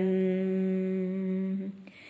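A singing voice holds the closing nasal 'm' of 'sharanam' as a steady hummed note at the end of a chanted verse. The note lasts about a second and a half, then stops.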